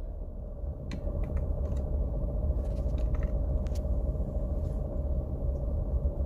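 Low, steady rumble and hum of a car heard from inside the cabin as it creeps along slowly, with a few faint clicks.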